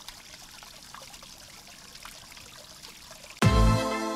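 A small garden spring trickling, faint and steady with little splashes. About three and a half seconds in, a loud music hit with a deep boom cuts in and carries on as sustained tones.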